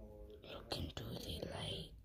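A child whispering, with a short voiced sound at the start.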